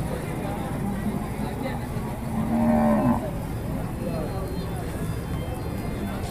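A cow mooing: one long call of about a second, starting a little after two seconds in and dipping in pitch at its end, over steady background noise.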